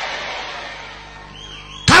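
A congregation's clapping and crowd noise, fading away after a drawn-out 'amen', with faint held musical tones underneath.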